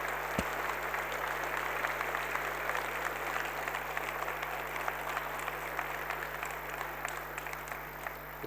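Audience applauding steadily, dying down a little near the end.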